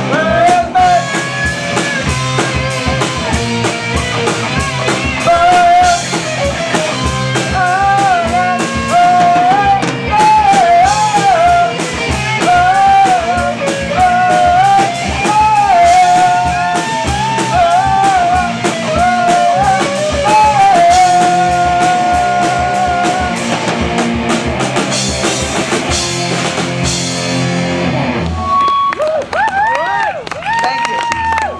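Live amateur rock band, two electric guitars through amps with a drum kit and sung lead vocals, playing a fast rock song; the song ends about two seconds before the end.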